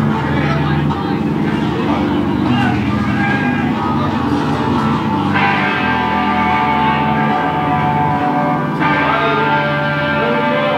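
A live rock band playing loud amplified music: drums and crashing cymbals under sustained guitar and bass chords, with a shouting vocalist.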